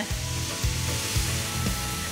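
Balsamic vinegar sizzling in a hot grill pan around charred peach halves, a steady hiss as the liquid deglazes the pan and boils off into steam.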